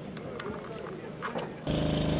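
A child's boots splashing and stamping in a muddy puddle, with faint voices in the background. Near the end an enduro motorcycle engine comes in suddenly, loud, and runs steadily.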